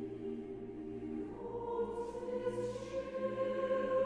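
A mixed chorus sings slow sustained chords with orchestra. About a second in, higher, louder voices come in over the lower chord.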